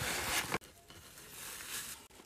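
Faint crinkling of plastic bubble wrap and shredded paper filler as a wrapped candle jar is pressed into a gift box; it cuts off about half a second in, leaving only a faint hiss.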